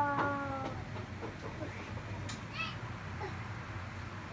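A toddler's drawn-out vocal sound, falling in pitch and trailing off within the first second. It is followed by a few light knocks of plastic toys being handled and a short high squeak near the middle.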